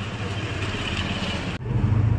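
Street traffic noise with a motor vehicle engine running steadily. About a second and a half in, it changes abruptly to a louder low hum.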